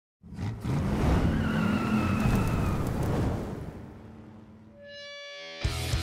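A car engine revving hard with tyre squeal, fading out about four seconds in. Then heavy rock music with electric guitar starts near the end.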